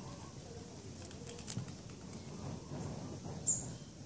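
Outdoor bird call: a single short, high chirp about three and a half seconds in. Under it runs a low, steady rustling with a few faint clicks.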